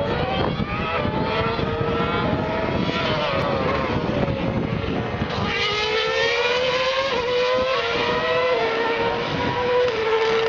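Ferrari 150° Italia Formula One car's 2.4-litre V8 running at high revs as it passes and accelerates away. The engine note climbs steadily through the second half and drops sharply at each upshift, twice near the end.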